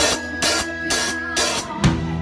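Acoustic drum kit played along to a backing track: a few loud accented hits with ringing cymbals, then kick drum strokes near the end.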